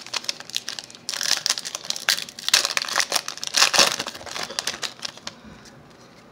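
Foil wrapper of a Donruss football card pack crinkling as it is opened and the cards are pulled out. After light rustles, a dense crinkle starts about a second in, lasts about four seconds, then stops.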